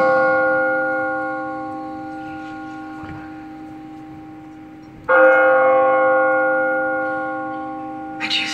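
A deep bell tolling: the ring of one stroke dies away slowly, and a second stroke comes about five seconds in and rings down in turn.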